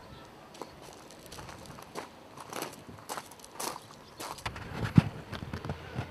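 Footsteps of people walking at a steady pace, about two steps a second, with a louder thump near the end.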